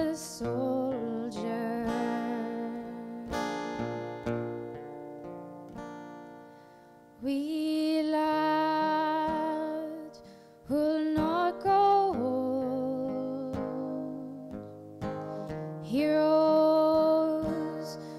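A slow folk ballad: a fingerpicked steel-string acoustic guitar and a woman singing long, held notes with vibrato. The music falls almost silent about seven seconds in before the voice and guitar come back.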